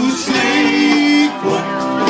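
Live music: a singer holds long notes over guitar accompaniment, a first note lasting about a second and a second one starting just after the middle.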